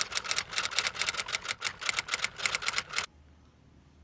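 Rapid, uneven clatter of typewriter keys laid over a title card as a sound effect, stopping abruptly about three seconds in.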